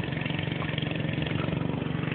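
A riding lawn mower's small engine running steadily while cutting grass.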